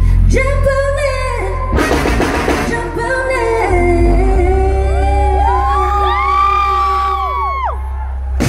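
A woman singing long held notes into a microphone with a live band over a heavy, steady bass. In the second half her notes slide up and down in long arcs.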